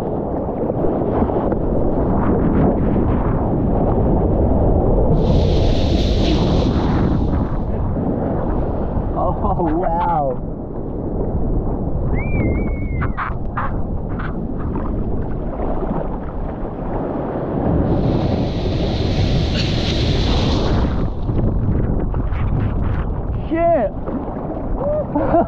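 Wind buffeting and water rushing over a waterproof action-camera microphone at the sea surface, with two spells of loud hissing spray about five and eighteen seconds in.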